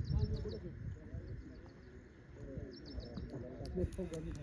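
Distant voices of players calling across the field, with a small bird chirping in quick runs of short high notes and wind rumbling on the microphone. A couple of sharp clicks come near the end.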